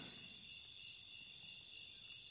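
Crickets trilling faintly and steadily.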